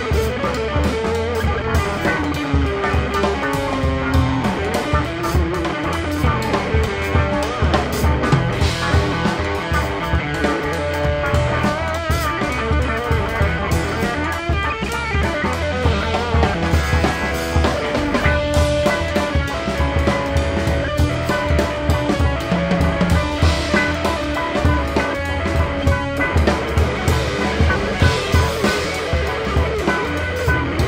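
Instrumental rock passage with no vocals: guitar playing over a drum kit and a heavy, steady low end.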